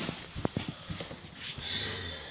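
A series of sharp clicks and knocks at uneven spacing, a few a second, like hooves clip-clopping or hard objects tapping.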